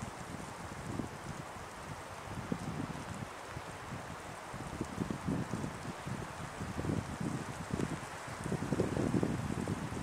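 Wind blowing on the microphone: a steady hiss with irregular low gusts that rumble, growing stronger near the end.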